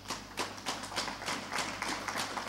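A few people clapping sparsely: sharp, irregular claps, several a second.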